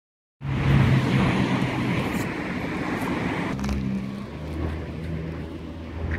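Road traffic: a motor vehicle's engine hum and tyre noise, starting abruptly just after the start and slowly easing, with the engine tone dropping lower about halfway through.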